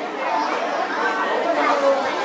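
Several people talking at once: general crowd chatter.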